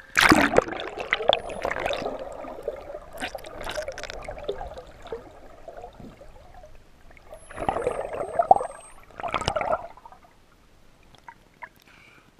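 Seawater rushing, sloshing and gurgling around a camera as it plunges under the surface and comes back up. There is a loud rush right at the start that fades over a couple of seconds, and two more bursts of sloshing about eight and nine and a half seconds in.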